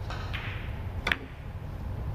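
Carom billiard balls clicking during a three-cushion shot, with a faint click shortly after the start and a sharp click about a second in.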